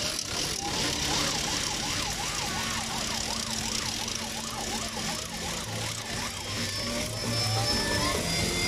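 A siren warbling quickly up and down in pitch, about two to three swings a second, over steady crowd noise; its pitch climbs at the start and the warble dies away about six seconds in.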